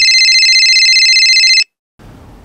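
Mobile phone ringtone for an incoming call: a loud, high electronic trill that stops abruptly about a second and a half in.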